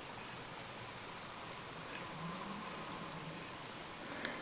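Faint soft rustling and small ticks of fingers handling a tube fly's hair wing and thread in a fly-tying vise.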